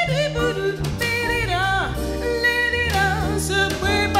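Female jazz singer scatting a fast wordless line that leaps and slides in pitch, with vibrato on the held notes, over double bass and drum kit accompaniment.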